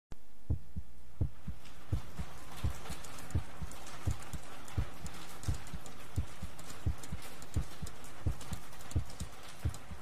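A heartbeat sound effect used as a track intro: paired low thumps, lub-dub, repeating about every 0.7 seconds over a steady hiss.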